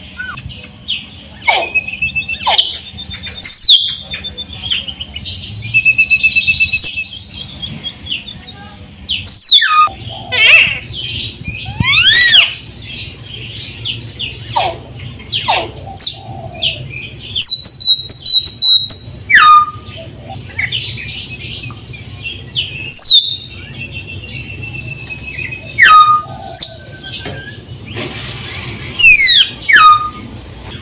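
A caged raja perling (Sulawesi myna) singing vigorously: loud whistled notes, sharp downward-sweeping calls and short trills, in bursts every second or two. A faint steady hum sits underneath.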